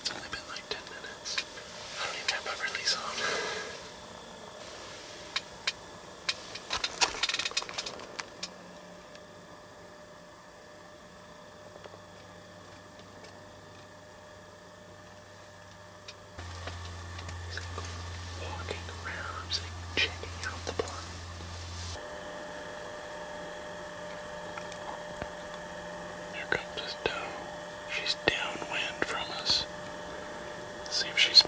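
Hushed whispering in short bursts, separated by quiet stretches with a faint steady hum underneath.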